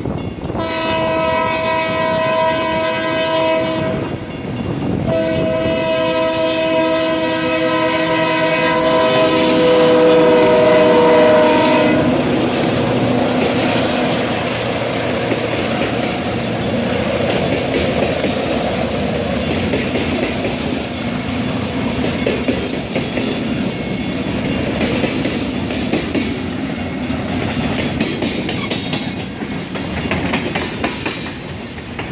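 Air horn on EMD GP-series (Geep) diesel locomotives sounding for a grade crossing: a short blast, then a long one that drops slightly in pitch as the locomotives pass. Then the steady rumble and clickety-clack of freight cars rolling past close by.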